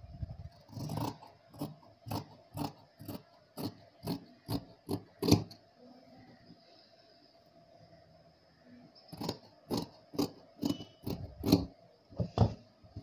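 Scissors snipping through cloth, a run of short cuts about two a second, a pause of a few seconds in the middle, then another run of cuts near the end.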